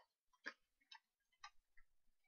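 Faint, irregular clicks and taps of cardboard trading-card boxes and packs being handled, about four in quick succession.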